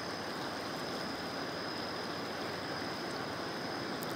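Steady rushing of the swollen Ipanema river in flood, fast muddy water running through a fence line, with a faint steady high-pitched tone above it.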